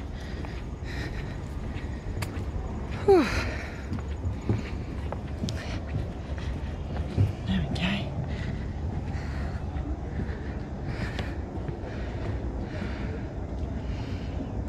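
Outdoor ambience while walking across a wooden footbridge: a steady low rumble, faint footsteps on the boards and distant voices of passers-by, with one short call falling in pitch about three seconds in.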